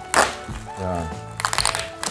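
Packing tape being cut and pulled off a cardboard crate: a short loud rip about a quarter second in, then a quick run of crackles near the end, over background music with singing.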